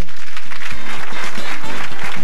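Studio audience applauding over the show's music as it goes to a commercial break.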